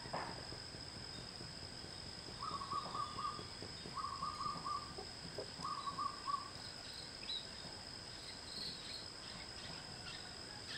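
Three short, rapidly pulsed bird calls, each under a second and about a second and a half apart, over a steady high-pitched drone of crickets or other insects.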